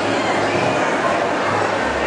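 Crowd of party guests chattering all at once in a large, busy banquet hall, a steady loud hubbub of many voices.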